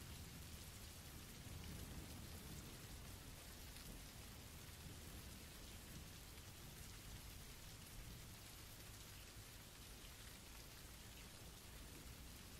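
Faint, steady rain.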